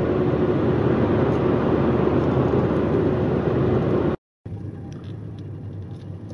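Road and tyre noise inside a car driving at highway speed, loud and even with a steady hum. About four seconds in it cuts off abruptly and gives way to the much quieter noise of the car rolling slowly.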